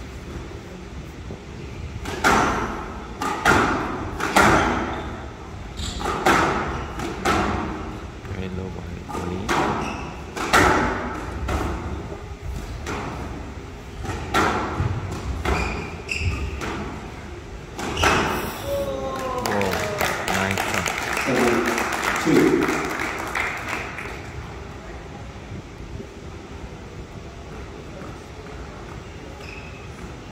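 A squash rally on a glass court: the ball cracks off rackets and walls in a run of sharp hits, about one a second, for some fifteen seconds. The rally ends in a burst of crowd voices and applause, then it goes quieter.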